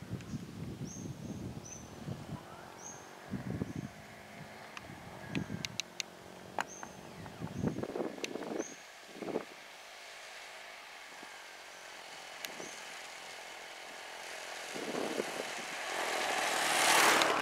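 Faint outdoor ambience with short high chirps repeating about once a second, then a motor scooter approaching, its engine and tyre noise growing louder near the end.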